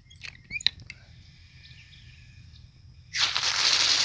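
A few light clicks and squeaks near the start, then about three seconds in a hose nozzle bursts into a loud, steady hissing spray of water. It is a strong jet at full pressure from the repaired well system.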